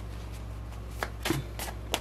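Tarot cards being handled and drawn: four short card clicks and slaps in the second half, one with a soft thud on the table, over a low steady hum.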